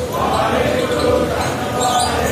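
Kirtan: a voice singing a Sikh hymn in long held notes, with accompaniment underneath.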